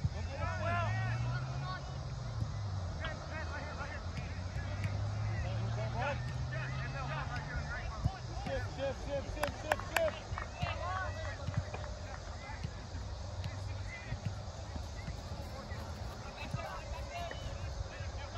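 Voices of players and spectators calling out across an open soccer field, over a low hum that rises slightly in pitch through the first half. A few sharp knocks stand out around the middle.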